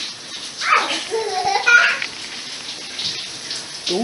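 Shower running, a steady hiss of spray behind a frosted shower door. A person's voice cries out from about a second in, with its pitch rising and falling.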